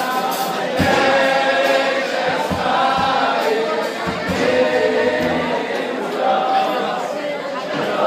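A crowd of men singing together along with live band music, with scattered low thumps in the mix.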